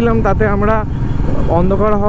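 A person talking over the steady noise of a moving motorcycle, with wind rumbling on the microphone; the voice breaks off for about half a second in the middle.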